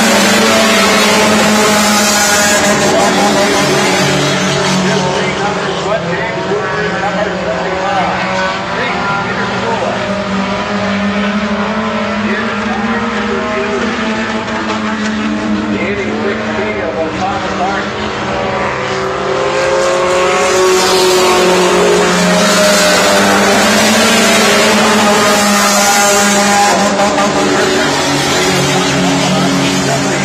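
Several four-cylinder Hornet-class race cars lapping a dirt oval. Their engines rev, rising and falling in pitch as the pack goes by, loudest near the start and again about two-thirds of the way through.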